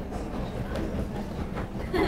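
Steady low rumble of room noise with a faint murmur of voices from a large seated group.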